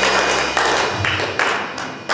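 A live church band's song ending: the held chord and bass note die away about a second in, while sharp strikes with ringing tails carry on about twice a second.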